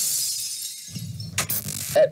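Clay pot shattering in a crash of breaking pottery, with a second crash of breaking pieces about a second and a half in.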